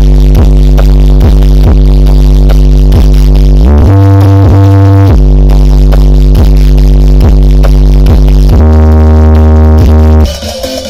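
Bass-heavy electronic music played very loud through a large sound-system wall of Betavo triple-magnet 21- and 18-inch subwoofers during a sound check. Deep sustained bass notes with a steady beat shift pitch twice, about four seconds in and near the end.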